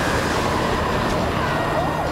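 Cartoon tornado wind effect, a loud steady rush, with a character's voice screaming over it.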